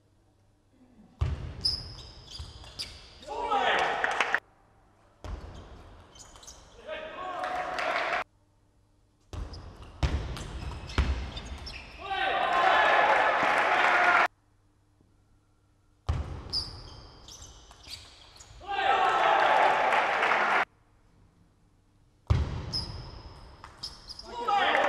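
Table tennis rallies in a large hall: the ball clicking off paddles and table, each point ending in a spell of shouting and crowd noise. About five points follow one another, each cut off abruptly.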